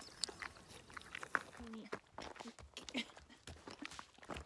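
Wild pony licking and nuzzling a hiker's bare skin for the salt in her sweat: irregular soft smacks and clicks of its lips and tongue close to the microphone.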